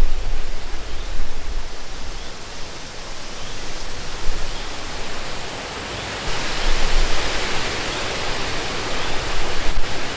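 Steady rushing outdoor hiss, with low wind buffeting on the microphone at the start; the hiss grows brighter about six seconds in.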